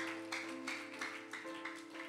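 Soft live worship-band music: held chords with a light, even picked rhythm of about five strokes a second, played quietly under the service.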